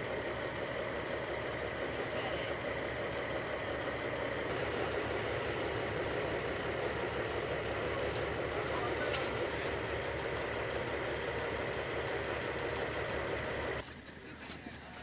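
A vehicle engine idling steadily close by, a low even pulse under a steady thin whine. It cuts off abruptly near the end.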